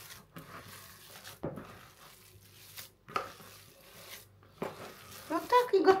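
Hand mixing and kneading a minced meat, rice and cabbage filling in a plastic bowl: soft, irregular squelching, with a couple of sharp knocks against the bowl.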